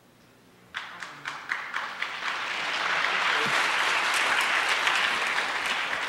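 Audience applauding: a few scattered claps begin about a second in and swell into steady, full applause.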